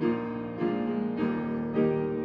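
Piano playing a slow instrumental prelude: a new chord is struck about every half second or so, four times, each fading as it rings.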